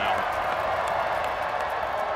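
Stadium crowd noise: a steady wash of many voices from the stands, with no single voice standing out.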